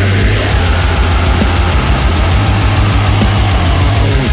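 Melodic death/thrash metal music: heavily distorted band sound driven by a fast, even pulse of low drum beats.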